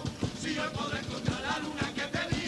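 A carnival comparsa performing: the group sings with guitar accompaniment and a steady drum beat.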